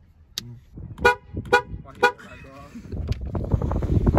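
Car horn of a GMC SUV tooting three short times, about half a second apart, right after a countdown. A steady rushing noise follows near the end.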